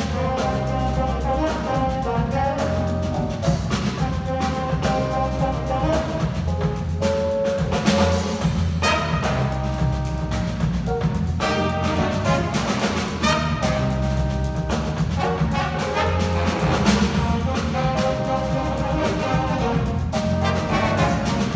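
Live jazz big band playing: saxophones, trombones and trumpets in sustained, shifting chords over a rhythm section of piano, electric guitar, bass and drums.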